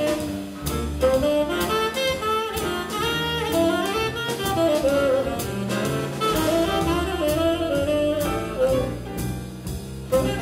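A small jazz group playing live: a saxophone plays a flowing lead line over a walking double bass and a drum kit keeping time on the cymbals.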